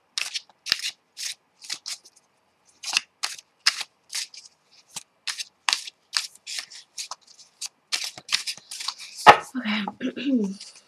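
A deck of tarot cards being shuffled by hand: a quick run of short papery slaps and riffles, about two to three a second, with a louder knock near the end.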